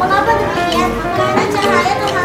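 A young girl reading aloud, with children's voices in the room, over background music.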